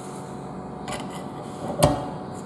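A horseshoe magnet being handled and set down on a table: a faint click about a second in, then one sharper knock near the end as it is put down.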